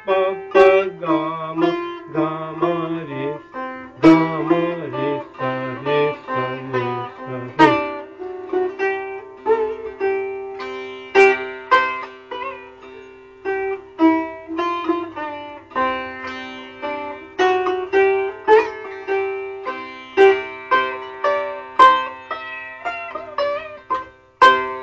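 Sitar playing a gat in raag Shyam Kalyan, teentaal. The first eight seconds or so are plucked phrases in the lower register with bent, sliding notes. After that come quicker plucked phrases higher up over steadily ringing strings.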